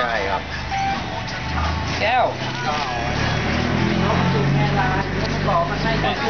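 A motor vehicle engine running, a steady low hum that comes in about one and a half seconds in and holds until the end, under people talking.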